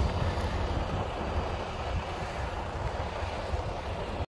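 Wind buffeting the phone's microphone outdoors, a steady low rumble without a clear pitch.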